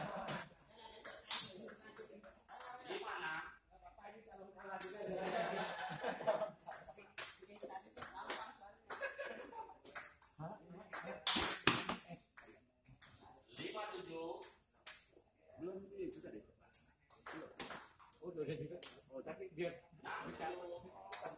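Table tennis rally: the ball ticking sharply as it bounces on the table and is struck by the paddles, in quick, irregular runs of hits with short breaks between points.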